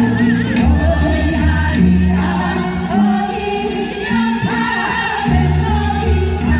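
A song performed with several voices singing together over a sustained bass accompaniment.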